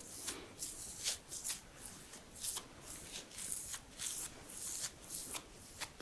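A facial brush stroking cleanser foam through a beard and over the skin of the neck: a run of short, bristly swishes, roughly two a second, at an uneven pace.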